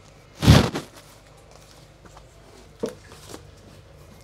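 Cardboard LP record sleeves being handled and flipped through: one loud brushing thump about half a second in, then two faint clicks of sleeves near the end.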